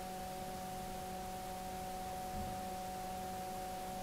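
Steady hum made of several constant tones under a faint hiss: the recording's background noise, with no other sound.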